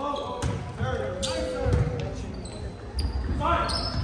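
Volleyball rally in a gym: the serve and the following passes and hits are sharp slaps of hands on the ball, several in a few seconds, echoing in the hall, with players shouting between the contacts.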